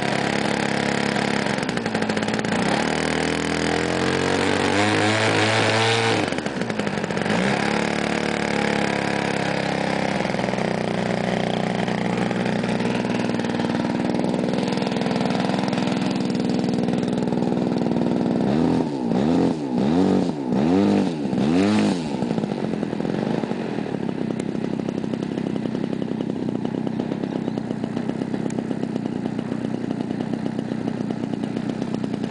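A 50cc two-stroke petrol engine with its propeller on a large RC aerobatic model plane, running through a ground run-up. The revs climb and drop back in the first seconds, then four quick throttle blips come about two-thirds of the way in, and the engine settles to a steady idle.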